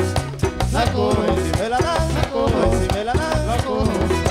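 Live merengue band playing, with accordion, guitar, bass and percussion in a steady driving dance rhythm.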